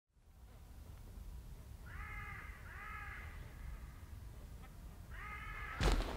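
A crow cawing three times, about two, three and five and a half seconds in, over a low steady rumble. A sudden loud thump comes right at the end.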